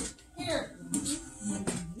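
Voices talking and calling out, with music in the background.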